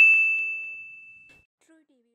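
Logo-sting sound effect: a single bright metallic ding ringing out with one high tone, fading away to nothing about a second and a half in.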